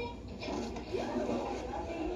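Faint voices from a television show playing in the room, picked up off the TV's speakers.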